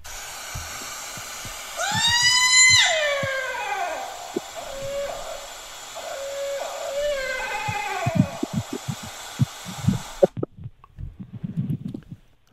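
Hissy field recording played back over a call line: a loud scream-like call that rises and then falls away, followed by fainter wavering, falling calls, then knocks near the end before the playback cuts off suddenly. The recordist believes the caller is a Bigfoot imitating a barred owl.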